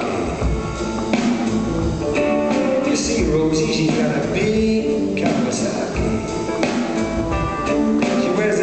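Live rock and roll band playing at full volume, with guitar, bass, drums and keyboards, and some singing.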